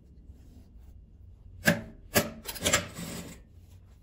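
Quilted fabric and zipper tape being handled and slid into place on a sewing machine bed: two sharp clicks about half a second apart near the middle, then a short rubbing of cloth.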